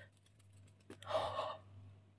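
A woman's short, sharp in-breath, a gasp, about a second in.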